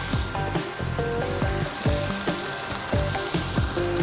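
Beef short ribs and vegetables sizzling in sauce in a hot frying pan, a steady hiss, with background music of short plucked notes over it.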